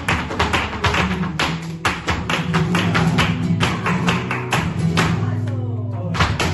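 Live flamenco music: sustained low guitar notes under fast, sharp percussive strikes in an uneven rhythm, the strikes pausing briefly near the end.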